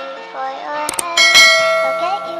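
Notification-bell sound effect of a subscribe-button animation: a click about a second in, then a bright bell ring that dies away slowly, over background music.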